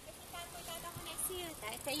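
A voice talking over a steady background hiss.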